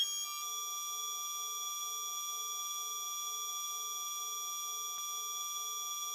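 Synthesized sound effect for a loading-bar intro: a steady electronic chord of pure tones held without change, with a faint pulsing low note beneath it.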